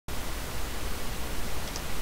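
Steady hiss from an open recording microphone, with a faint low hum under it.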